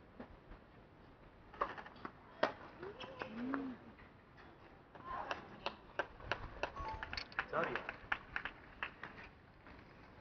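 Sharp knocks of a tennis ball off rackets and court during a doubles point, with short voiced calls. In the second half comes a dense run of quick sharp claps mixed with voices as the point ends.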